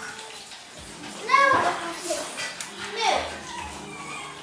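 A young child's voice making wordless calls and squeals, loudest about a second in, with another call falling in pitch near the three-second mark.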